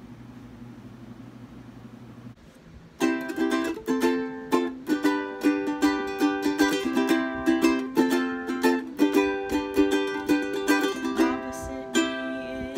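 A low steady hum for the first couple of seconds. Then, about three seconds in, a ukulele starts, strummed in chords with a steady, even strumming pattern.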